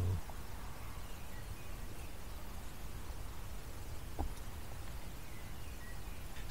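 Quiet outdoor background noise with a low rumble, a few faint high chirps and one soft click about four seconds in.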